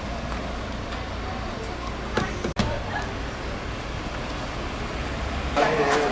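Steady low rumble of outdoor traffic and vehicle noise, broken by a brief dropout in the middle. Near the end it gives way to the chatter of a busy restaurant dining room.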